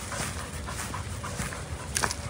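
A dog panting softly, a run of short breathy puffs.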